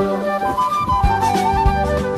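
Instrumental break in a karaoke backing track: a lead melody line over bass and a steady drum beat, with no singing.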